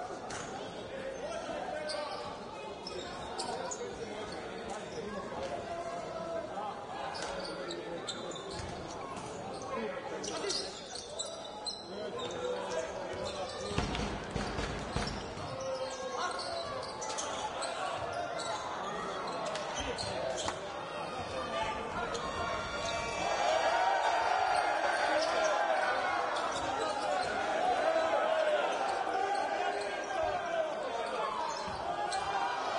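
Live game sound of indoor basketball: the ball bouncing on the hardwood court amid players' calls and spectators' voices echoing in the hall. The crowd grows louder over the last several seconds.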